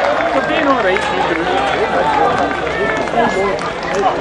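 Many voices of a spectator crowd talking and calling out over one another, steadily and fairly loud, with no single voice standing out.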